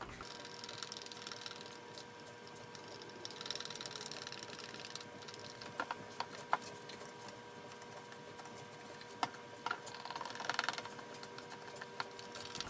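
Wooden stir stick scraping around the inside of a plastic cup as two-part epoxy resin is mixed: a soft, uneven scraping with a few light clicks of the stick against the cup.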